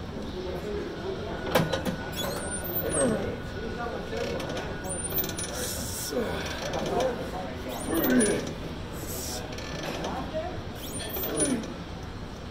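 Gym leg-exercise machine in use: its mechanism creaking and clanking in repeated strokes every second or two, over the steady background noise of the gym.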